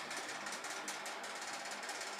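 Quiet steady background hiss with a faint low hum and a few light ticks, typical of room tone picked up by a phone held close, with slight handling.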